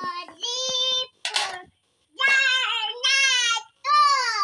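A child singing in a high voice, several short held notes in separate phrases, with a brief breathy hiss between them about a second and a half in.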